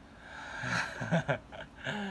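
Quiet human vocal sounds without clear words: soft chuckling and breathy noises.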